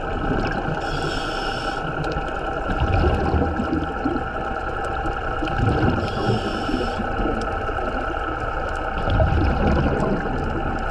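Underwater recording: a steady engine hum from a dive boat, heard through the water as several constant tones over a low rumble. Two short bursts of a diver's exhaled regulator bubbles come about a second in and about six seconds in.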